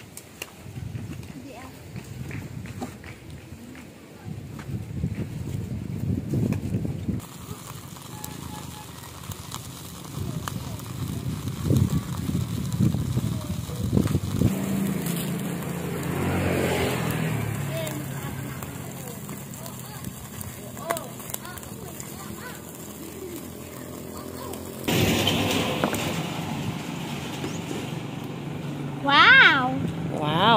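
Street ambience: wind on the microphone and indistinct voices, with a motor vehicle engine running for about ten seconds in the second half.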